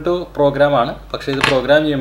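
A man talking, with a short sharp click about one and a half seconds in.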